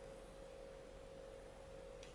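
A faint, steady pure tone held at one pitch over near-silent room tone.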